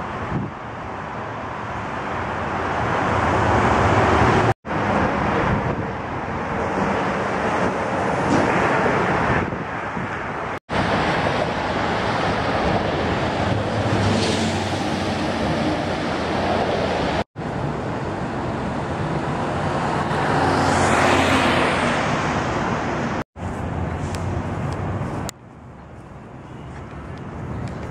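Steady road traffic, cars and trucks passing on a multi-lane roadway, with wind on the microphone; a few louder vehicles swell up and fade as they go by. The sound drops out briefly four times, and turns quieter near the end.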